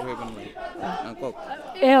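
Background chatter: several people talking quietly, faint and indistinct, with a close voice speaking loudly again near the end.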